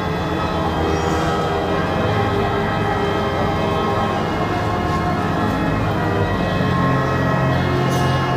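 Church pipe organ playing held chords, its low notes changing a couple of times.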